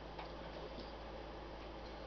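Quiet room tone: a steady low hum with a few faint, irregular ticks.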